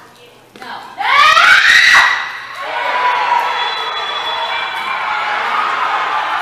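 Football spectators screaming together as an attack reaches the goal: a sudden loud burst of rising shouts about a second in, lasting about a second, then a steady clamour of shouting voices.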